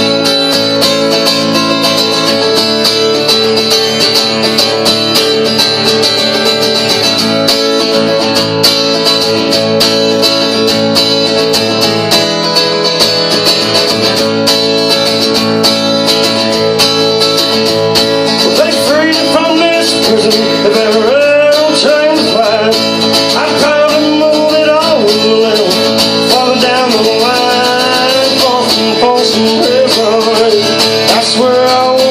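Live country song on a steel-string acoustic guitar, strummed steadily. A man's singing voice joins the guitar about eighteen seconds in.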